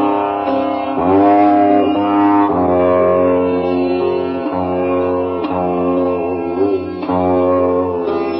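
Sitar playing a slow, meditative Indian melody, with notes plucked and then bent up and down in pitch, over a steady low drone.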